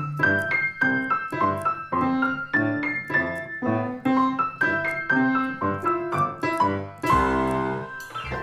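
Acoustic piano played as a simple duet, a child's melody of single notes at about three a second over a teacher's accompaniment, with a fuller chord near the end.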